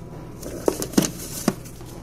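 Handling noise with three sharp knocks, about a third to half a second apart, as objects are moved and bumped.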